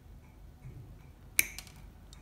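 A single sharp metallic click about one and a half seconds in, with a short ring, from small metal hand tools being handled at a jeweller's bench; faint handling noise around it.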